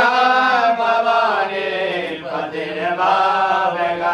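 A voice chanting a Sanskrit devotional hymn in long, slowly gliding held notes over a steady low drone.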